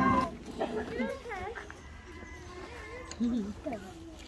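Background music stops just after the start, followed by short vocal calls with bending pitch, a quick run of them about a second in and a lower pair just past three seconds.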